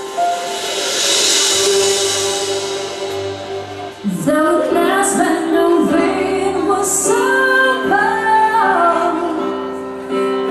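Live pop band playing a slow ballad: held keyboard chords with a cymbal swell, then about four seconds in a woman's voice enters singing over bass, drums and electric guitar, with cymbal crashes.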